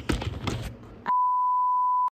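A steady, single-pitch test-tone beep of the kind played with TV colour bars. It starts about halfway through and holds at one even pitch and level.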